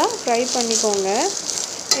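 Curry leaves, onion, garlic, dal and grated coconut sizzling in oil as they are stirred in a stainless steel pan, a steady frying hiss. A woman's voice talks over it throughout.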